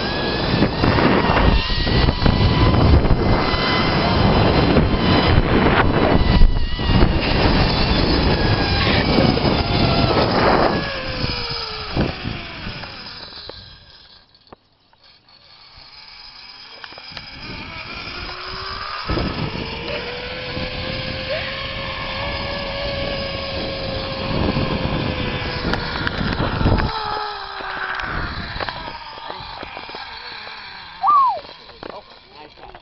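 Zip-line trolley pulleys running along the steel cable with a whine that rises and falls in pitch, under heavy wind buffeting on the microphone from the rider's speed. The noise dies away almost completely about halfway through, builds again, and drops off a few seconds before the end.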